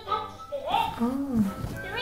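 Electronic talking-pen picture book toy playing its recorded sounds: a short electronic chime of steady tones, then a high, sing-song cartoon voice from the toy's small speaker.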